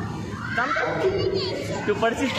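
Children's voices calling out and chattering while they play.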